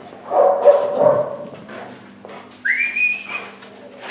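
Police dog vocalising while it searches: a loud, rough sound lasting about a second begins a moment in, and a short high whine rises and then holds briefly about two-thirds of the way through.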